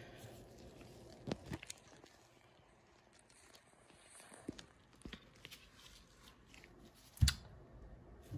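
Quiet room with faint, scattered handling clicks and rustles of gloved hands working a coin under a digital microscope, and one sharp knock about seven seconds in.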